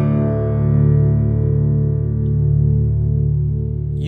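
A chord struck on a 1920s Weissenborn hollow-neck lap slide guitar rings on and fades only slowly, with long sustain. Its whole body and hollow neck resonate as one chamber, giving a warm, rich tone. The low notes waver gently as they ring.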